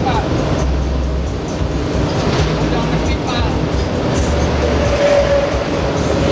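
Steady drone of a bus engine and road noise heard from inside the cab at speed, with music and voices mixed over it.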